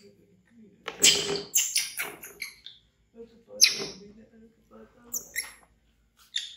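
Baby monkey screaming loudly in several shrill, high-pitched bursts: a run of cries about a second in, another sharp scream about halfway through and short high squeals near the end. These are fear screams at a toy crocodile.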